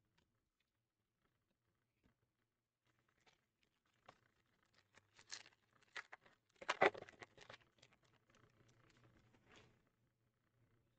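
Faint rustling and soft clicks of baseball trading cards being slid off a hand-held stack one by one. It starts about four seconds in after near silence and is loudest around seven seconds in.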